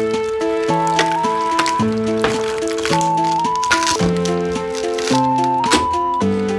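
Background music: soft synth chords of held notes that change every half second to a second, with a few light clicks over it.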